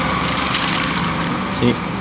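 Plastic bag rustling and crinkling as it is handled and turned in the hand.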